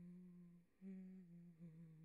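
A woman quietly humming a slow tune in long held notes, with a short pause for breath under a second in.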